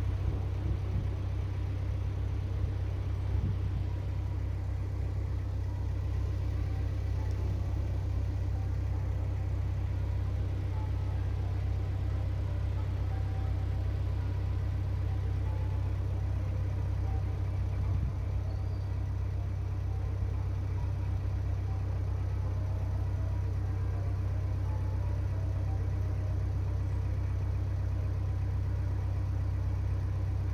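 A narrowboat's inboard diesel engine running steadily as the boat cruises, a low, even engine note that holds unchanged throughout.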